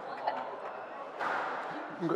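Squash rally in play: a few sharp knocks of the ball off racquet and walls, with players' footsteps on the wooden court floor, under a faint murmur of voices.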